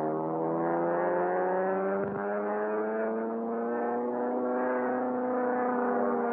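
Propeller aircraft engine droning steadily and slowly rising in pitch as it speeds up, levelling off near the end. A brief click about two seconds in.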